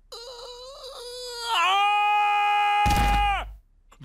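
A cartoon character's long held "ah", his voice returning after medicine for a lost voice: it starts faint and wavering, then swells to a loud, steady note about a second and a half in. A deep rush of noise with a low thud sounds under it near the end, just before the note stops.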